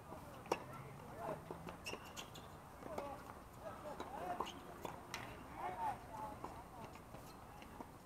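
Tennis balls being struck and bouncing on an outdoor hard court: sharp pops at irregular intervals, with faint, distant voices.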